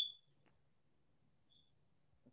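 A brief high ping right at the start that dies away quickly, and a much fainter one about one and a half seconds in; otherwise near silence with a faint low hum.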